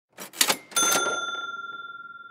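Cash-register 'cha-ching' sound effect: two quick mechanical clatters, then a single bell ding about three-quarters of a second in that rings on and slowly fades.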